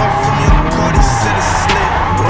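Music playing over a drifting Nissan S13's turbocharged SR20DET engine held at steady revs, with tyres squealing as the car slides. A couple of low thumps come about half a second and a second in.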